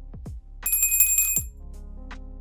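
Background music with a steady beat; about two-thirds of a second in, a bright, high bell-ring sound effect rings for under a second over it, the kind of notification-bell cue that goes with clicking a subscribe bell.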